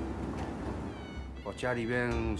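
Commercial kitchen background noise with indistinct voices, then a person's voice starting about one and a half seconds in, its pitch gliding up and down.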